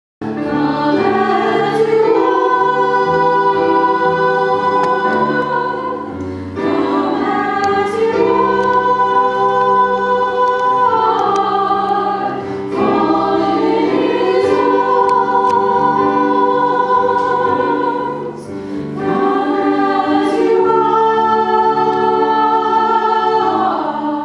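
A small group of singers with keyboard accompaniment singing a worship song, in four sustained phrases with brief breaks between.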